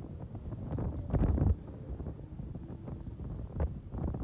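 Wind buffeting the microphone as the camera is swung through the air on a tall fairground ride, in uneven gusts with a louder one about a second in.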